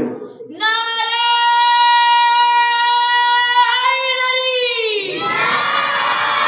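A single voice chants one long, high held note for about four seconds, wavering a little before it ends. About five seconds in, many voices answer together in a chanted response.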